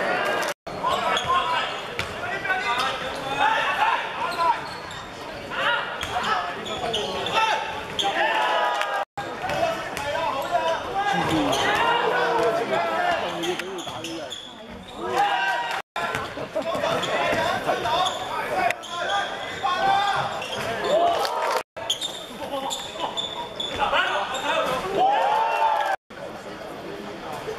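Basketball game sounds: players and people courtside shouting and calling out over one another while a basketball bounces on the hardwood floor. The sound is broken four times by a split-second dropout where the highlight clips are cut together.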